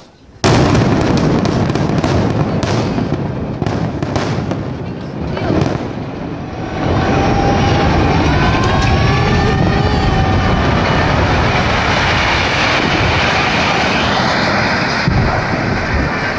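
Explosive demolition of a tall concrete tower: a sudden loud blast about half a second in, followed by a rapid series of sharp cracks from the charges for several seconds. Then a steady loud rumble as the tower collapses, with people's voices shouting over it.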